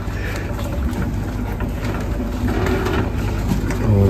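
Wheeled hospital bassinet rolling along a corridor floor, a steady low rumble.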